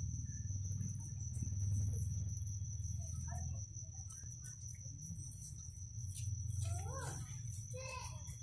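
Night outdoor ambience: a continuous high-pitched insect trill over a steady low rumble on the microphone, with faint voices of people talking briefly, about three seconds in and again near the end.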